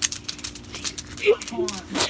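Campfire crackling with many rapid, irregular sharp pops that sound like popcorn.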